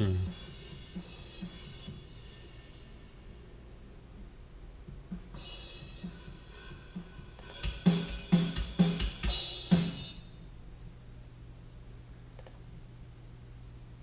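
Recorded acoustic drum kit played back through studio monitors: the room track, roughened with EQ, compression and a Lo-Fi effect for grit. Light hits at first, a cymbal wash about five seconds in, then louder hits with cymbal crashes from about eight to ten seconds in.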